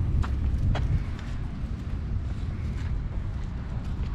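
Footsteps of a person walking with two dogs on a wet paved path: a few light steps in the first second over a low, uneven rumble of wind on the microphone.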